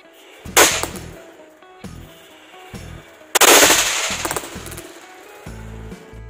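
Toy paper roll caps going off in a homemade roll cap machine: one sharp crack about half a second in, then a rapid rattling string of cracks about three and a half seconds in that fades over a second or so. Background music with a beat plays under it.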